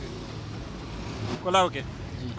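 Steady low rumble of motor vehicles in street traffic, with a short burst of a man's speech about one and a half seconds in.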